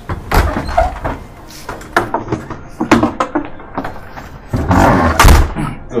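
A string of knocks and clunks as a door is handled and a plastic chair is brought out, with a louder, longer noisy stretch near the end.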